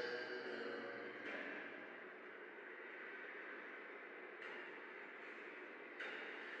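The last sung note of a layered a cappella vocal fades out in reverb during the first second, leaving a faint hiss.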